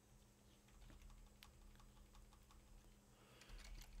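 Faint computer keyboard typing: a run of soft, quick key clicks.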